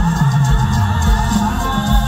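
Live mor lam band music with several singers singing together into microphones over a steady low drum beat.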